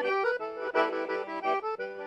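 Valerio piano accordion played solo: a quick run of short chords and melody notes, changing every quarter second or so.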